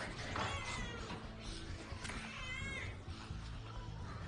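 A baby crying in short, high wails, one just after the start and another about two seconds in, heard faintly from the show's soundtrack over quiet background music.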